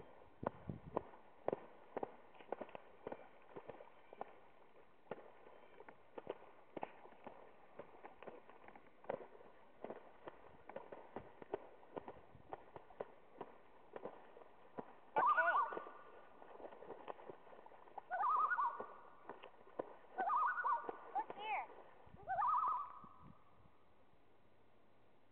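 Irregular splashing of water as two loons fight on the surface, then from about fifteen seconds in, a handful of loud, wavering loon calls in short bouts.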